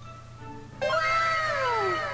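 A long cat-like meow that starts nearly a second in and slides down in pitch, over soft background music.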